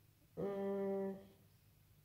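A woman's voice holding one drawn-out hesitation sound at an even pitch for just under a second, starting about a third of a second in.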